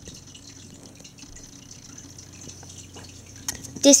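Quiet room tone with a few faint ticks and light handling noise, as a small wicker basket is handled and something is lifted out of it.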